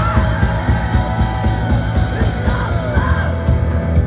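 Rock band playing live and loud: electric guitars, bass and drums, with a shouted, held vocal over them.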